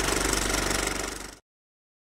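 Film projector sound effect accompanying a vintage countdown leader: a steady, rapid mechanical clatter with film crackle, fading out after about a second and a quarter.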